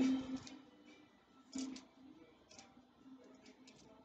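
A few soft clicks of copper pennies being slid and stacked on a felt cloth, over faint background music.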